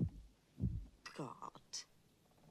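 A re-forming creature's moaning cries, falling in pitch, over deep heartbeat-like thumps. A short breathy hiss comes near the end.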